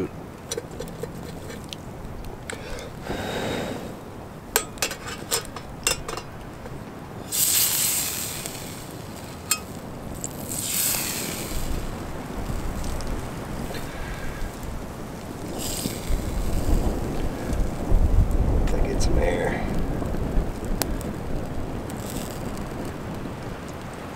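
Small wood campfire crackling with scattered sharp pops, while gusts of wind rumble on the microphone, heaviest in the second half.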